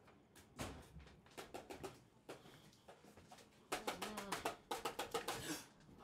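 Faint kitchen clatter at a gas stove, then a rapid run of clicks for about two seconds, typical of a burner igniter being held on. A brief low, voice-like hum comes partway through the clicking.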